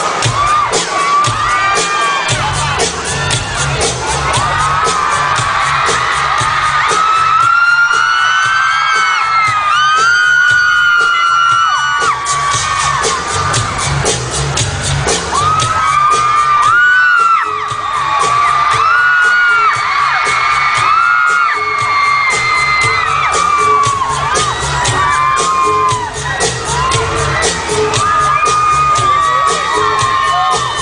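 An audience screaming and cheering at a high pitch, many voices rising and falling, over loud concert music with a steady heavy bass beat.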